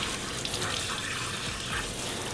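Water running from a handheld sprayer nozzle onto a small dog's coat, a steady stream spattering down onto the metal grate of a wash tub.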